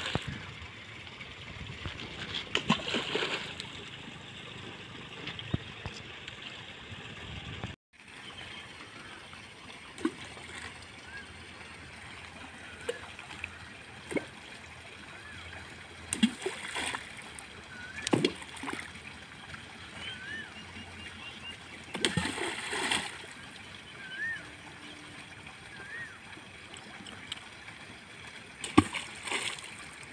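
Splashes in a canal's still water as things are thrown in: a loud one at the very start, then short separate splashes every few seconds.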